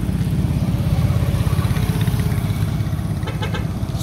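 Motorcycle engine running close by with a fast low pulsing, amid passing street traffic.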